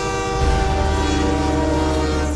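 Trailer soundtrack music: a loud held chord of many sustained tones, with a deep bass swelling in about half a second in.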